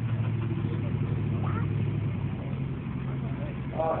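Off-road 4x4 buggy's engine idling steadily with a low, even hum.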